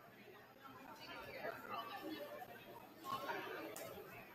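Indistinct chatter of several people talking in a gymnasium, no words clear.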